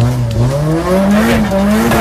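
A Nissan Silvia drift car's engine revving up and down while it drifts, with its pitch rising and falling with the throttle, over the noise of the rear tyres skidding and squealing.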